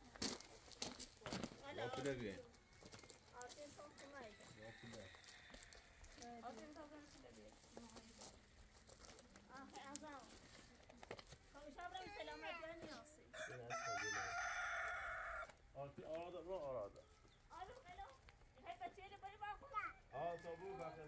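A rooster crowing once, a single long call of about two seconds, two-thirds of the way in, among faint scattered voices.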